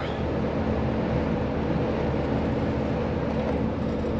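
Steady road and engine noise inside a moving van's cabin: an even rumble with a faint, steady low hum.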